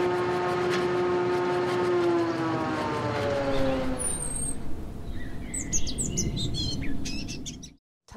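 Channel logo sting: a rumbling drone with a pitched hum gliding slowly down in pitch, then high bird chirps over the fading rumble in the second half.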